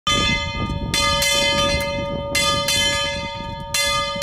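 A large bell hung in a wooden tower, rung by pulling its rope: struck about six times in four seconds, each ring carrying on into the next, over a low rumble.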